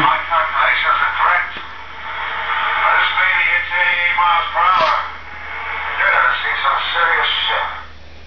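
A recorded sound bite of voices played back through the DeLorean time-machine replica's built-in sound system, sounding thin and radio-like.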